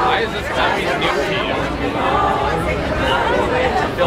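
A group of teenagers chattering, several voices talking over one another with no one voice standing out, over a steady low rumble.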